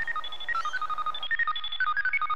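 Sci-fi electronic bleeping: a fast run of short beeps hopping between a few pitches, the wishing machine's computer sound as it sets to work on a time-travel wish.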